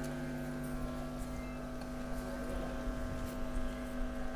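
Steady electrical hum with several evenly pitched overtones, unchanging throughout, over a faint low rumble.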